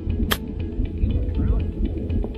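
A golf club striking the ball on a short shot, one sharp click about a third of a second in, over steady background music.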